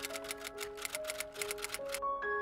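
Typewriter key-clicking sound effect, a quick even run of about seven clicks a second, over soft music with long held notes.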